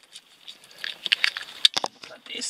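Light clicks and rustling of a hand moving over plastic car-interior trim under the dashboard, with a few sharper clicks near the end.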